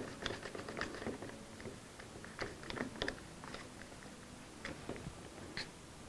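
One-handed trigger bar clamp being positioned and tightened onto a guitar side in its wooden mold: a string of light, irregular clicks and ticks, closest together in the first second, then scattered.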